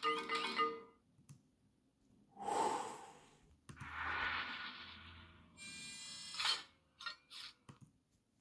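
Electronic beeps and whistles of an R2-D2 toy, with two hissing bursts in between, as the droid's reply.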